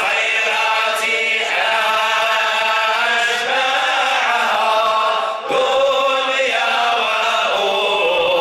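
Men's voices chanting a Sufi devotional dhikr, singing long melodic lines with a short break for breath about five and a half seconds in before the next phrase starts.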